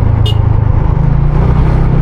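Motorcycle engine running steadily while riding, its note stepping up slightly about halfway through, with a brief high-pitched chirp shortly after the start.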